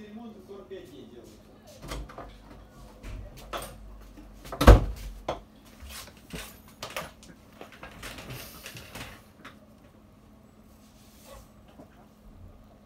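Irregular knocks, clicks and clatter of things being handled and set down on a workbench, picked up by a microphone lying on the bench. The loudest is a single heavy thump a little before halfway, with a brief rustle later on.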